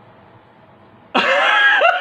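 A man's loud vocal outburst, a shout of just under a second that starts about a second in, after faint background noise.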